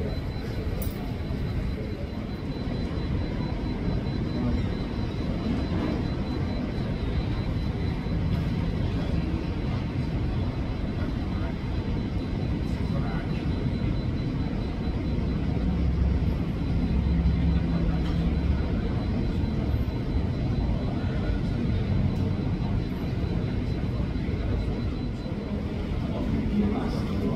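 Muffled rumble of a taxiing jet airliner, a Boeing 737, heard through terminal glass. It swells for a few seconds past the middle as the plane passes closest, under a thin steady high tone.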